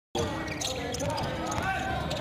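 Basketball being dribbled on a hardwood court, a few bounces, under a commentator's voice.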